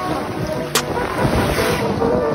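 Lake Michigan waves washing in with wind rumbling on the microphone, under background music with held notes. A single sharp click is heard about three quarters of a second in.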